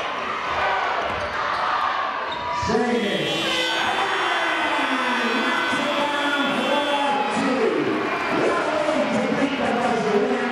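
Arena game-clock buzzer sounds for about four seconds, starting about three seconds in. It marks the end of the quarter with time expired, heard over crowd noise in a large hall.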